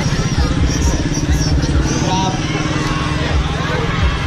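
Crowd chatter over a continuous heavy low rumble.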